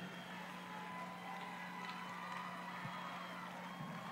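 Quiet background: a faint, steady low hum over faint ambient noise, with no distinct events.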